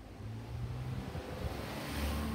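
Low rumble of passing road traffic, with a hiss that swells near the end as a vehicle goes by.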